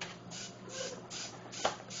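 Several small hobby servos whirring in short, evenly spaced bursts, about two to three a second, as the controller's sequencer steps them through a movement pattern, with one sharp click near the end.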